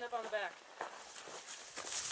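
A person's voice for about half a second at the start, then faint scattered scuffs and clicks of footsteps and movement on dirt and gravel.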